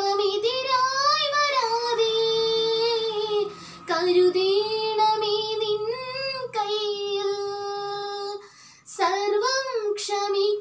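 A young woman singing solo in long held phrases, with short pauses between them, the longest near the end.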